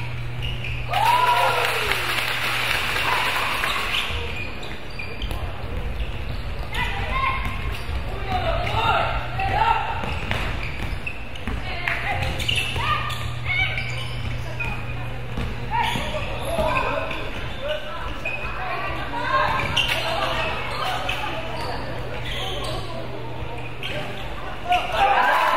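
Basketball bouncing on a hardwood gym floor during play, mixed with players' scattered shouts and calls, over a steady low hum.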